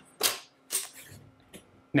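Two sharp metallic clacks about half a second apart as the CETME C2 submachine gun's charging handle is lifted and the bolt is worked, which unlocks the bolt lock.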